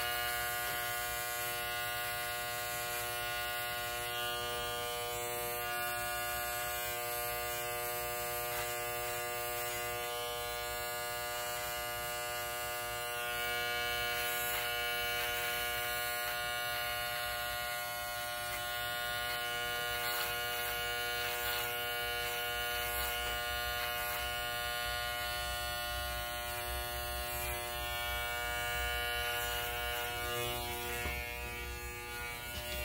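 Electric hair clipper running with a steady hum as it cuts hair around the ear.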